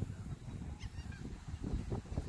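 Wind rumbling on the microphone, with a faint, brief bird call about a second in.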